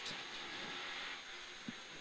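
Inside the cabin of a Peugeot 106 GTi rally car at speed: a steady rush of engine and road noise with a faint high whine, and one short click near the end.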